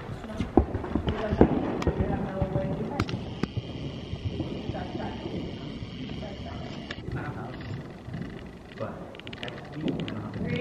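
Horse's hoofbeats thudding on soft dirt arena footing, loudest in the first couple of seconds as the horse passes close, then fading as it moves away.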